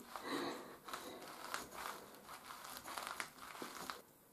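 Bare feet shifting and treading on a Pranamat-type acupressure mat of spiked plastic rosettes: faint, irregular rustling with a few small clicks.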